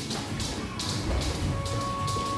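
Background music with a steady beat, over the light taps and thuds of two boxers sparring in a ring, footwork on the canvas and gloves meeting.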